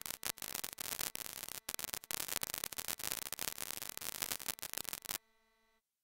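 Quanta output of a Steady State Fate Quantum Rainbow 2 analog noise module: dense, irregular crackling like the surface noise of a vinyl record. It cuts off suddenly about five seconds in, leaving a brief faint hum.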